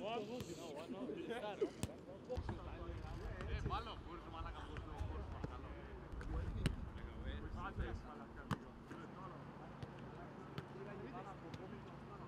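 A football being kicked several times, sharp thuds spaced a few seconds apart, among indistinct voices of players talking.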